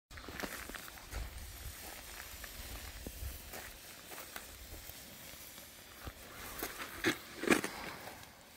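A saltpeter-and-sugar mixture burning in grass, with a steady hiss and scattered small crackles. A few louder rustling knocks come near the end.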